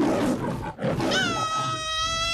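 A lion's roar sound effect opens the track. About a second in, a steady high held note with many overtones takes over.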